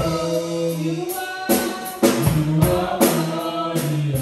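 Live gospel worship music: a woman sings a sustained lead line into a microphone over a band with bass and a drum kit keeping a regular beat.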